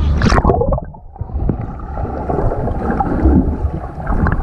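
A splash as a child jumps into a swimming pool, then muffled gurgling and bubbling heard from underwater as she sinks in the pool.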